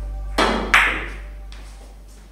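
Two sharp clacks of Russian billiard balls about a third of a second apart as a shot is played: the cue striking a ball, then ball hitting ball, the second the louder. Background music fades out underneath.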